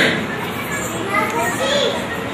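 Many children's voices chattering and calling out at once, overlapping, with no music.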